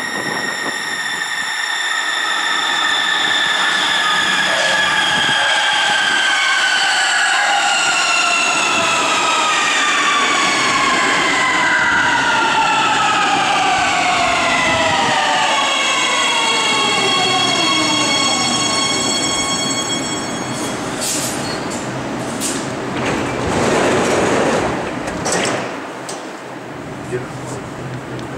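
Siemens Inspiro metro train arriving at a platform and braking to a stop: the traction motors whine in several tones that slide steadily down in pitch until the train halts. Near the end come a few sharp clicks and a rush of noise as the train stands at the platform.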